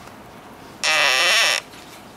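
Dry-erase marker squeaking on a whiteboard as a stroke is drawn: one loud, high squeal lasting under a second, about halfway through.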